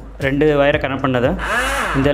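A person's voice with drawn-out, gliding pitch and no clear words, over a low steady hum.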